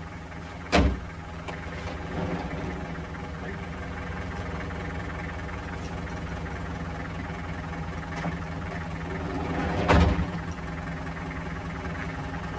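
Van doors slammed shut twice, once about a second in and again near ten seconds, over a steady low hum.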